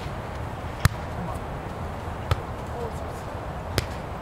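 A volleyball being struck by players' hands and arms three times, about a second and a half apart, each a sharp smack, the first the loudest.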